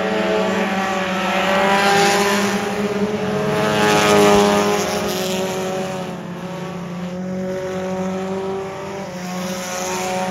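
Several four-cylinder mini stock race cars running at racing speed, their engines overlapping and rising and falling in pitch as they pass close by. The sound is loudest about two seconds in and again about four seconds in, then settles into a steadier drone from the cars further around the track.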